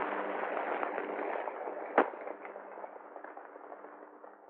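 Crackling hiss over a faint low hum, with one sharp loud crack about two seconds in, after which the crackle fades down.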